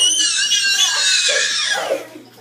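A child's shrill, high-pitched scream during rough play, held for nearly two seconds and slowly falling in pitch before it breaks off near the end.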